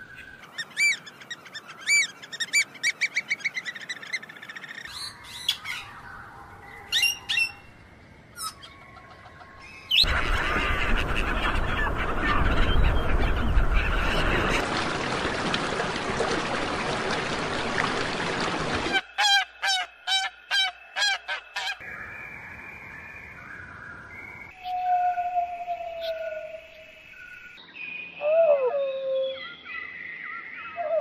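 Bird calls that change every few seconds: short repeated calls at first, a loud dense noisy stretch about a third of the way in, a quick run of calls around two-thirds of the way through, then scattered calls that slide in pitch near the end.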